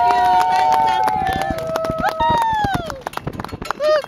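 Crowd cheering, several voices holding long drawn-out shouts together that fall away as whoops about two seconds in, over scattered hand clapping.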